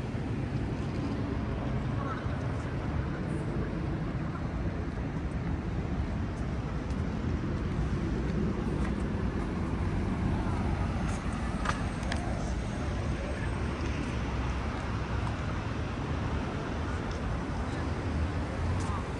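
Steady city traffic noise, a low continuous rumble of road vehicles, with faint voices of people nearby mixed in.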